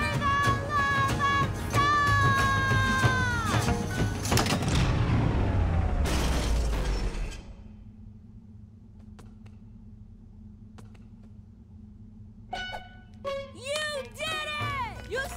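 Cartoon sound effects and music for a big machine shutting down: a loud run of pitched notes dropping away, then a long falling whine as the machine winds down, leaving a low steady hum with a few faint clicks.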